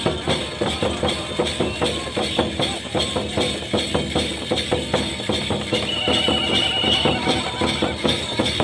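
Santhal dance drumming: drums and cymbals beating a quick, steady rhythm with jingling percussion. A high, steady tone is held for about a second around six seconds in.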